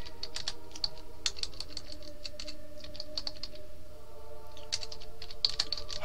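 Typing on a computer keyboard: an uneven run of short key clicks, several a second.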